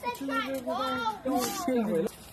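Speech only: a high voice, likely a child's, talking in unclear words.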